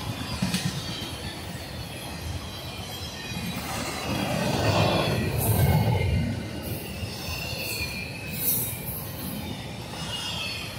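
Intermodal freight train rolling past: a steady rumble and rattle of wheels on rail, swelling louder around the middle.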